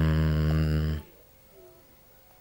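A man's voice holding a long, level, low-pitched drawn-out "daan" (Indonesian "and") like a hum, cutting off about a second in.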